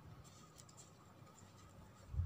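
Near silence, with faint light ticks and rustling of green satin ribbon strips and double-sided tape being handled, mostly in the first second.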